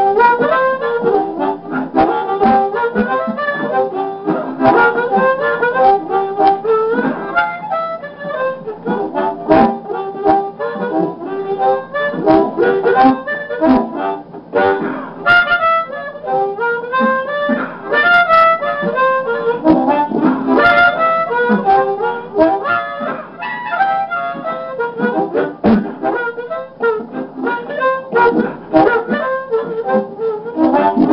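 A Hohner Blues Band diatonic harmonica in C played blues-style, a steady stream of short notes that change pitch quickly.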